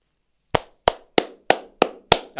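One person clapping hands slowly and evenly: five sharp claps, about three a second, starting about half a second in.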